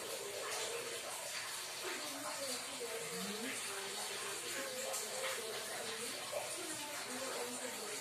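Faint, indistinct background voices over a steady hiss.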